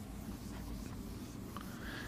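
Faint rubbing of a marker on a whiteboard as it is written on.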